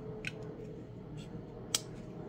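Emerson Commander folding knife being worked in the hand: a few faint clicks, then one sharp metallic click near the end as the blade is folded toward the handle.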